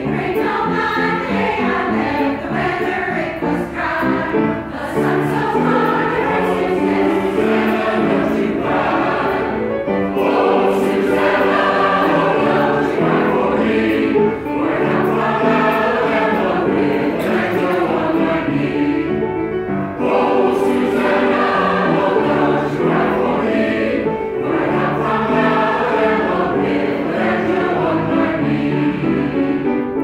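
Mixed choir singing in harmony, a continuous sung line with short pauses between phrases.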